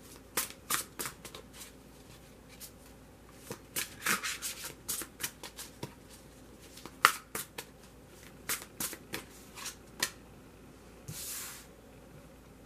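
A deck of tarot cards being shuffled by hand: quick, irregular snaps and flicks of cards against each other. Near the end a longer swish as a card is drawn and laid on the table.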